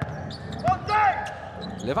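A basketball being dribbled on a hardwood court, a few sharp bounces.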